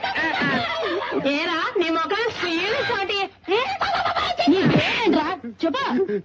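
A man wailing in comic, blubbering cries of "eh, eh, eh", his voice wavering quickly up and down, with other voices overlapping.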